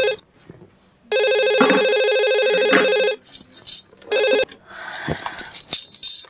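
Cordless telephone ringing with a steady electronic ring tone, signalling an incoming call. It rings for about two seconds, pauses for about a second, and rings again for two seconds. A brief third ring then cuts off short.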